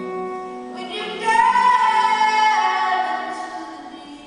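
Female singer performing live with acoustic guitar; about a second in she holds a loud, sustained note that slides down near the end before the music drops quieter.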